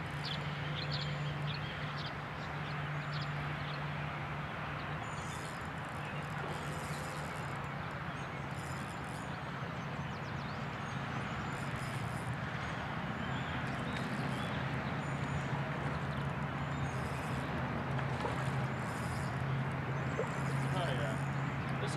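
Open-air background: a steady low hum under a haze of outdoor noise, with short high chirps from birds every few seconds.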